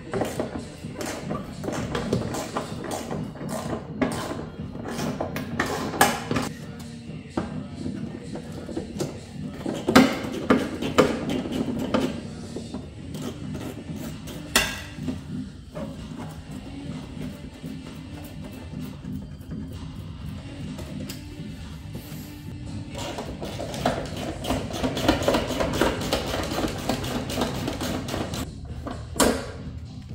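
Background music, with the clicks and ratcheting of hand tools working on engine-bay fasteners and now and then a knock of metal parts.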